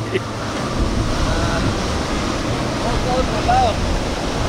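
Ocean surf washing onto the beach with wind on the microphone, a steady noise with a deep low rumble.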